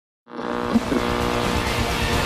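Silence, then about a third of a second in a loud intro soundtrack cuts in abruptly and holds steady: dense music or sound-effect noise with several sustained tones.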